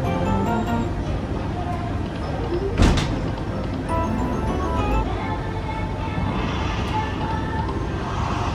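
Dancing Drums Explosion slot machine playing its free-spins bonus music, a melody of quick short notes, as the reels spin and the win meter counts up. One sharp hit comes about three seconds in, over a steady casino background hum.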